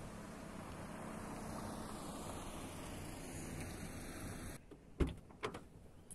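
Steady outdoor noise that cuts off, then a car door opening: a sharp latch click and a second click about half a second later.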